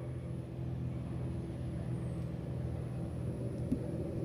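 A steady low rumbling drone with several held low tones and a few faint clicks near the end.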